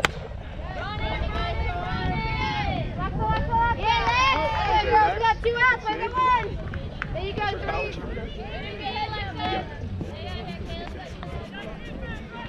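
One sharp crack of a softball bat meeting the pitched ball right at the start, then players and spectators shouting and cheering, loudest a few seconds in.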